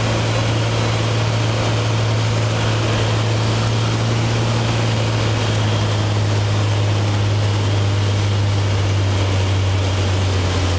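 Light aircraft's piston engine and propeller running with a steady drone while coming in to land on a grass strip. The engine note drops a little in pitch near the end.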